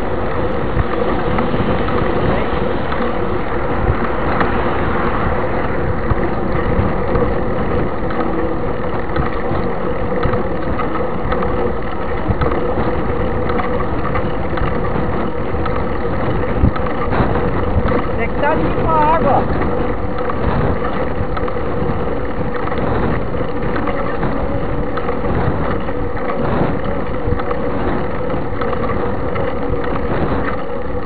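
Wind buffeting a bike-mounted camera's microphone over steady rumble and rattle from a mountain bike rolling on asphalt, with a constant hum. A few brief high chirps come about two-thirds of the way through.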